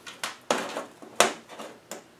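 Sharp metal clicks and knocks as rocker arms and springs are handled on the rocker shaft and set down on a metal workbench: four separate knocks, the loudest a little past a second in.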